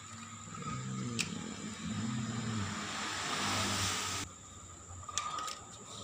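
A person's voice making low, wavering mouth engine noises for the toy vehicles, then a loud hiss that cuts off suddenly a little after four seconds in. Two sharp clicks of plastic toys on the tile floor, about a second in and again about five seconds in.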